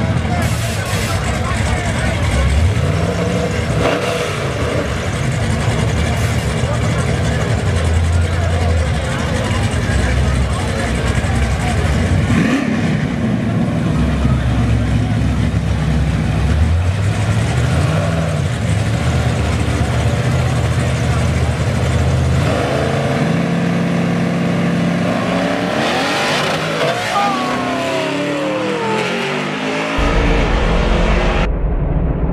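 Car engine revving repeatedly, its pitch climbing and dropping several times, with a long falling sweep near the end. Voices are heard throughout.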